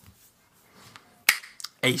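A single sharp click about one and a half seconds in, followed by a couple of faint ticks.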